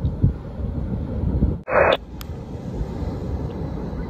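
Wind buffeting the microphone as a steady low rumble. Just before halfway it is broken by a brief gap and a short hiss of noise.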